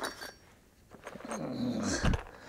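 A man's low, strained groan of effort while bending down, falling in pitch in the second half. A few light clinks come at the very start.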